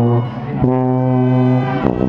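Marching band brass playing long held chords. One chord breaks off shortly in, a new one is held for about a second, and a quick change with a sharp accent comes near the end.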